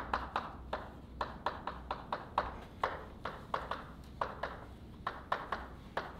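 Chalk writing on a blackboard: a quick, irregular run of sharp taps and short scratches, several a second, as letters are chalked.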